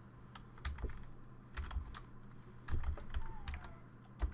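Computer keyboard keys clicking as a short word is typed, in three quick bursts of keystrokes.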